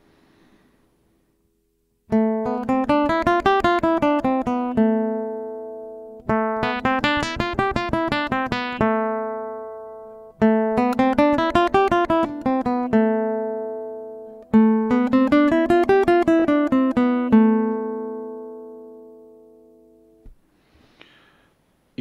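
Cort AC160CFTL nylon-string classical guitar played ordinario, running a scale from G up an octave and back down four times in a row. Each run ends on a held note, and the last one rings out for several seconds.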